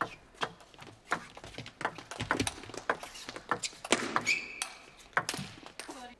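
Table tennis rally: the celluloid ball clicking back and forth off paddles and the table in a quick run of sharp taps, with a brief high squeak about four seconds in. The sound cuts off suddenly at the end.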